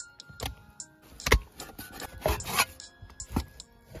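Cleaver slicing raw pork on a wooden chopping board: a few irregular knocks of the blade on the wood with some scraping, the loudest about a second and a half in. Faint background music runs underneath.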